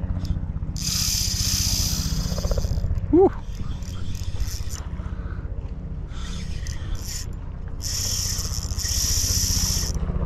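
Spinning reel being wound in, its retrieve heard as stretches of high whirring hiss, over a steady low hum. About three seconds in comes one short, high chirp that rises and falls, the loudest sound here.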